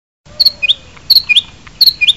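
A bird chirping: the same short call, a quick double note followed by a rising note, repeated three times at even intervals about three-quarters of a second apart.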